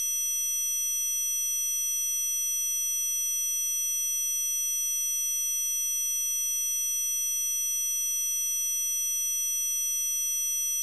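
Experimental electronic drone: several steady, high-pitched pure tones held together without change, with no beat or melody.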